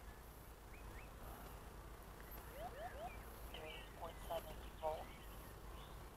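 Faint birdsong: scattered short chirps and whistles from small birds, with no plane motor heard.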